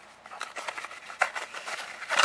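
A vacuum tube being pulled out of its small cardboard box: light cardboard rustling and scraping with scattered small clicks, one sharper click about a second in.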